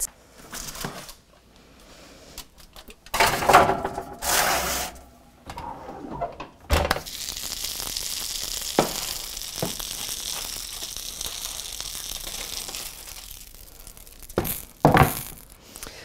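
A baking dish on a metal sheet tray is handled and set down, with clatters and thunks a few seconds in and again near the end. A steady hiss runs for several seconds in the middle.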